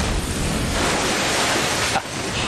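Car crash sound as the speeding car hits the speed bump: a sudden loud rush of noise that starts abruptly, holds steady and cuts off after about two seconds.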